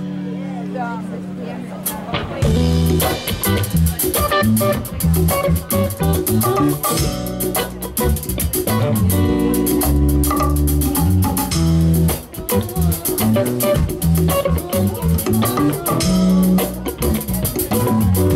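A live rock band plays the instrumental opening of a song. Electric guitar and bass play alone for about two seconds, then the drum kit comes in and the full band plays a steady beat.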